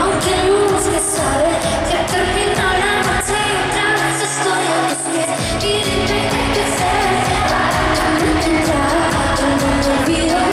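Live pop music: a woman singing into a handheld microphone over a steady beat, with the bass cutting out for about a second and a half around the middle.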